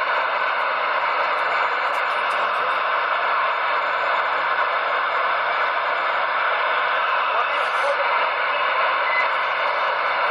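Steady hiss of static from a CB radio's speaker, even and unbroken with no voice coming through.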